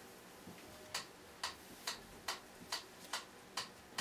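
A metronome ticking steadily, a little over two ticks a second, with the clear ticks starting about a second in.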